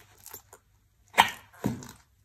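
High-heeled shoes treading on and crushing a soft blue item on a tile floor: a few faint clicks, then two short, sharp crushing sounds a little over a second in and half a second later.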